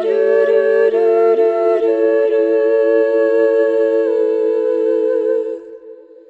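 Female vocal quartet holding a wordless a cappella chord, the inner parts moving between notes during it. About five and a half seconds in the chord falls away suddenly, leaving a faint lingering note.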